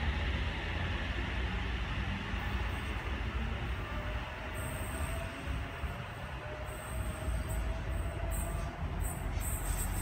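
Sydney Trains OSCAR (H-set) electric multiple unit pulling away from the platform. Its running noise is a steady low rumble, and a faint whine rises slowly in pitch midway through.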